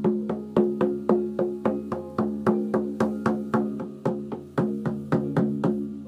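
A hand drum beaten in a steady rhythm, about four strokes a second, its low ringing tone sounding under the strokes. The beat eases slightly and stops near the end.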